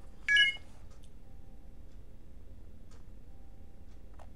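A short, high electronic beep with several tones at once, about a third of a second in. After it come a few faint ticks and clicks over a low steady hiss.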